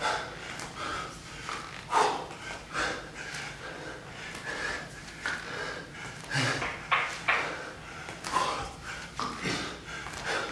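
A man breathing hard during a strenuous floor exercise, with short, forceful exhales about once or twice a second.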